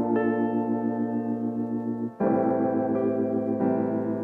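A vintage-style soul music sample plays back: warm piano chords layered with an electric piano. The chord changes after a brief dip about two seconds in, and again near the end.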